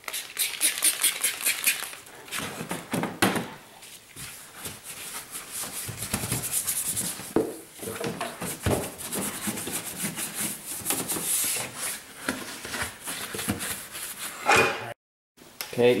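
A brush scrubbing soapy water over a wet car body panel in rapid back-and-forth strokes. The sound drops out briefly near the end.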